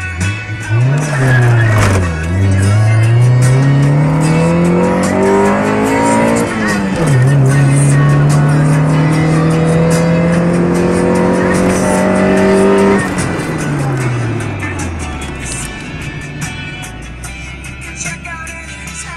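Stock Honda D16Z6 1.6-litre SOHC VTEC four-cylinder accelerating hard from a standstill. The revs climb through first gear, drop sharply at the upshift about seven seconds in, and climb more slowly through second. Near thirteen seconds the revs fall away as the throttle is released, and music plays underneath.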